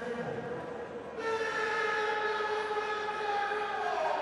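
A long, steady horn-like blast with several tones sounding together, getting louder about a second in, its upper tone sliding down in pitch near the end.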